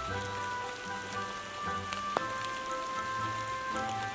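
Steady rain falling, with scattered drips, under quiet background music of long held chords.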